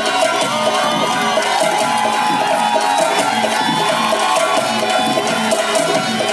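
Live Indian folk music from a small ensemble, with a steady hand-drum rhythm under melody, played continuously.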